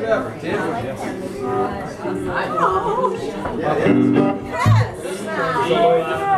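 Several people talking and chattering over live band music in a hall-like room, with a few held instrument notes and a strong low bass note about four and a half seconds in.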